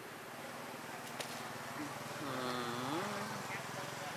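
A person's wordless voice, a drawn-out sound that dips and then rises in pitch for about a second, just past the middle, over a steady low hum, with a single sharp click about a second in.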